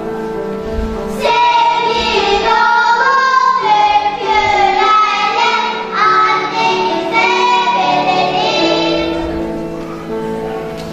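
A children's choir singing a song together, with held accompanying notes underneath; the singing eases off near the end as the song closes.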